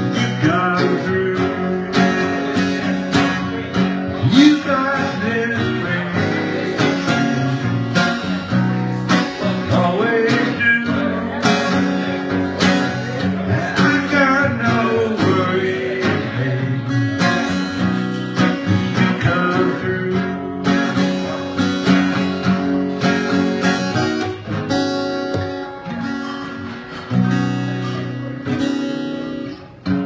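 Acoustic guitar strummed steadily. A final chord is struck about three seconds before the end and left to ring out and fade.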